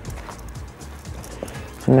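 Soft background music with faint scraping and tapping of a silicone spatula stirring rice-and-meat stuffing in a pot. Speech begins right at the end.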